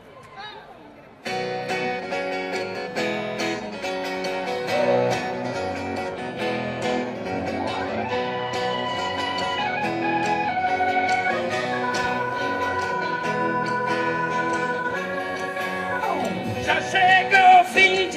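Live band with electric guitars, keyboard and drums playing an instrumental song intro, starting abruptly about a second in.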